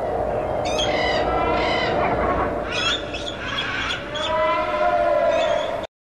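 Several harsh, bird-like squawking calls, one long call near the end, over a dense noisy background; the sound cuts off abruptly just before the end.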